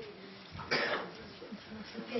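A single short cough a little under a second in, with faint murmured speech around it.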